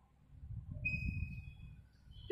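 Chalk being drawn across a blackboard to write a letter, faint, with a thin high squeak lasting under a second near the middle.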